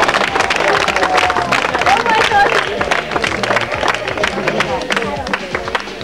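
Scattered hand clapping from a small crowd, with voices calling out and music playing underneath.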